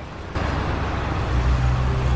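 A car driving along the road: a steady rush of tyre and road noise that comes in about a third of a second in, with a low engine rumble growing louder in the second half.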